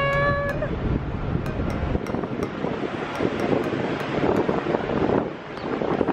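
A woman's excited high-pitched squeal, held on one pitch and cut off about half a second in, followed by wind buffeting the microphone.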